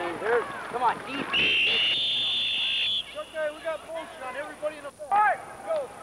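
A referee's whistle blown in one long, steady, shrill blast of about a second and a half, starting about a second and a half in: the signal that the play is dead. Sideline voices shout around it.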